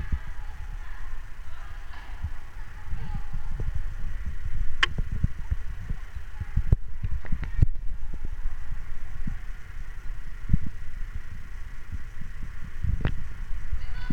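Futsal match sounds in a sports hall: many low thuds of players running and the ball being kicked and bouncing on the floor, with a few sharp knocks, the sharpest about five seconds in, and faint distant voices.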